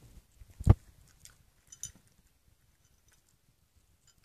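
Small bichon-poodle dog crunching dry kibble and nosing a plastic dish: a few sharp clicks and crunches in the first two seconds, the loudest about three-quarters of a second in, then little sound.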